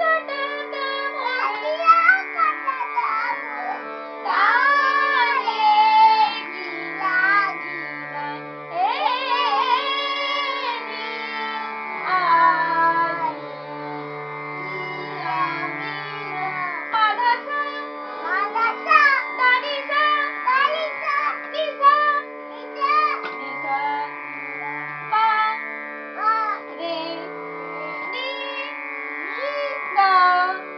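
Singing in an Indian classical style, a sliding, ornamented melody over a steady drone. A reedy keyboard accompanies it, most likely a harmonium, with low notes stepping between pitches.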